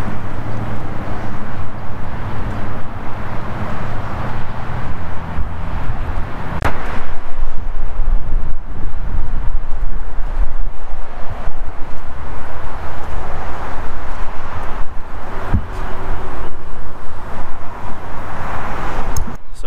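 Wind blowing on a handheld camera's microphone outdoors. There is a low steady engine hum in the first six seconds, and the rumble grows gustier after that. Two sharp clicks come through, one about seven seconds in and one near the end.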